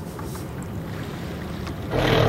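Steady wind noise on the microphone with light water sounds around a kayak on calm sea.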